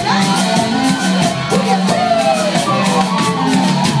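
A cumbia band playing live in a hall, with electric guitar and drum kit, and voices singing and shouting over the music.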